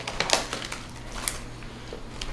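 Crisp crackling and crunching of potato chips, with the foil chip bag being handled. Sharp clicks come thick in the first half second, then thin out to scattered crackles.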